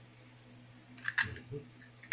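A short clatter of sharp clicks with a couple of soft knocks about a second in, from hands handling the bowl of dried anchovies and egg.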